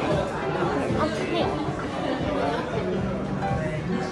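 Indistinct chatter of diners talking in a restaurant dining room, with music playing underneath.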